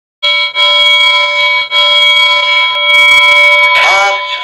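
Channel intro sting: a loud, steady electronic chord of several held tones, alarm-like, that cuts out briefly twice in the first two seconds and ends in a swirling sweep just before the end.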